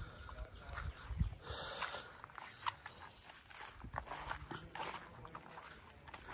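A dog making a few faint, short sounds, among scattered small clicks and rustles.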